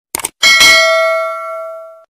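Subscribe-button sound effect: a brief click, then a bell struck once that rings on and fades away slowly.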